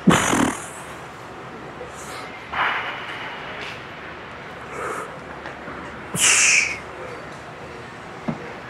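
A lifter's forceful, strained breaths and grunts during heavy incline barbell bench press reps. There are three short bursts: a loud one at the start, another about two and a half seconds in, and a hissing one a little after six seconds, over steady gym background noise.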